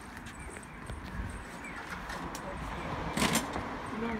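Street noise while a city bicycle is wheeled along, with faint voices. A little over three seconds in comes one short, loud clatter.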